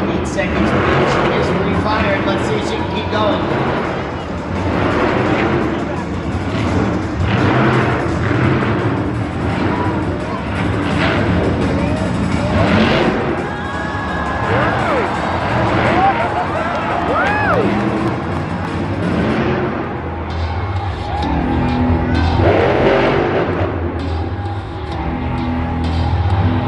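Loud music over the stadium PA, with a monster truck engine running underneath.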